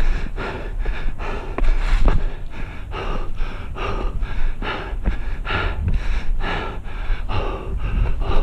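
A hiker's hard, rhythmic panting from climbing steep steps, a breath about every half second.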